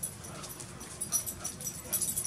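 A dog faintly whimpering, over light high-pitched ticking.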